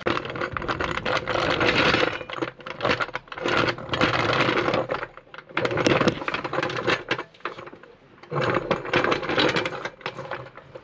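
Hydraulic floor jack being pumped to lift a trailer axle, its rattling clicks coming in four bursts of a second or two each with short pauses between, picked up through a camera sitting on the jack.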